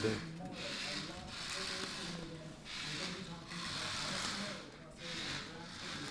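Remote-control toy car driven in short spurts across a wooden floor, its small electric motor and wheels whirring in about six half-second bursts roughly a second apart. Faint voices sit underneath.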